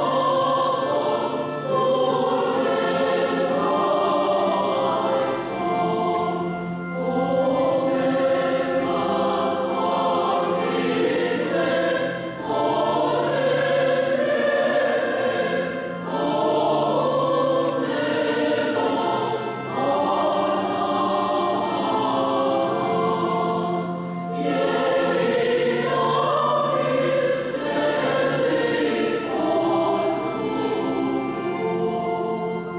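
Choir singing the slow chant of an Armenian church requiem service, in long held phrases with short breaks every few seconds.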